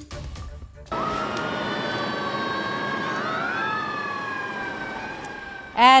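Two emergency-vehicle sirens wailing at once, starting about a second in. Their slow rising and falling pitches cross each other over a steady rush of background noise.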